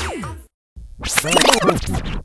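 A song is cut off by a tape-stop effect, its pitch dropping away in about half a second. After a short silence comes a loud burst of rapidly sliding, squealing sounds, like record scratching.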